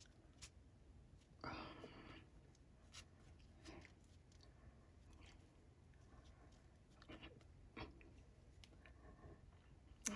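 Near silence, with faint ticks and soft rustles of a paintbrush working gel medium onto paper; the most noticeable rustle comes about one and a half seconds in.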